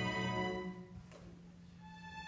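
Student string orchestra of violins, cellos and double basses playing; the phrase dies away within the first second into a soft pause with only a faint low tone held underneath, and a quiet higher note comes in near the end.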